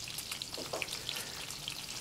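Peppers, onion and garlic frying gently in olive oil in a frying pan, a faint steady sizzle with fine crackles.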